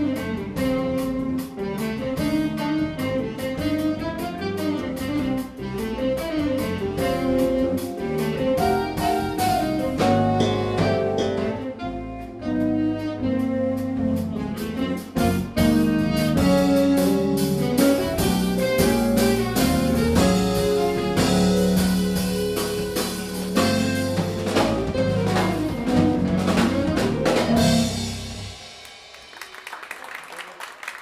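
Live instrumental jazz band playing: saxophone, keyboard, electric bass and drum kit. The piece ends about two seconds before the end, and applause begins.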